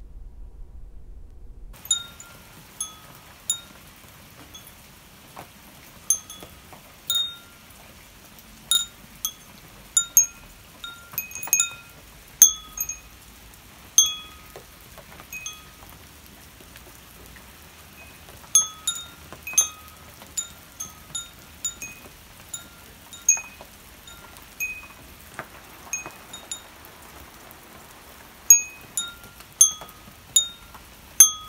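Metal tube wind chime ringing: irregular strikes of several clear tones, some clustered and some alone, each ringing out briefly. It starts about two seconds in.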